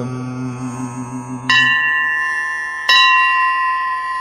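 A bell struck twice in a devotional song's accompaniment, about a second and a half in and again near three seconds. Each strike rings on with a few clear steady tones, after a held low note of the music fades out.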